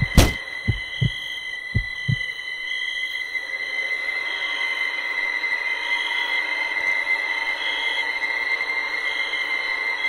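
Heartbeat sound effect: a few paired low thumps in the first two seconds that fade away, giving way to a steady high-pitched ringing tone with soft, irregular beeps over it that swells slightly.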